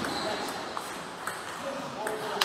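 Table tennis rally: the plastic ball clicking sharply off the bats and table, about two hits a second.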